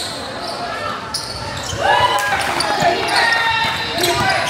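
A basketball bouncing on an indoor court during a game, with voices from players and spectators around it.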